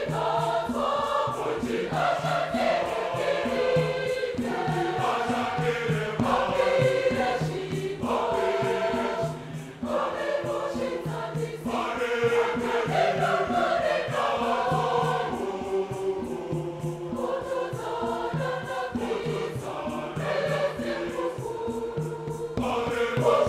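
Mixed choir of women and men singing a Shona-language Catholic hymn in several voice parts, in long sustained phrases with a short breath break about ten seconds in.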